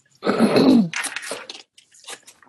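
A person clears their throat in one loud burst, followed by a few short, breathy laughs.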